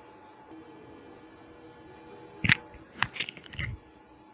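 Quiet room tone, then a quick cluster of sharp clicks and knocks about two and a half seconds in: plastic network gear and cables being handled.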